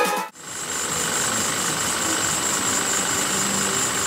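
2014 Ford Fiesta's engine idling steadily, with a thin, steady high-pitched whine above it.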